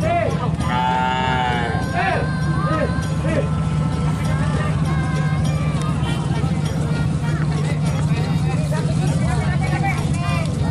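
People shouting and calling, with one long held shout about a second in and shorter calls scattered after, over a steady low hum.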